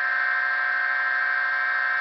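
Bedini-style pulse motor running at speed: a steady high-pitched whine made of several fixed tones.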